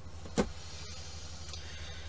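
Steady low electrical hum of room tone, with one short click about half a second in from paper trading cards being handled.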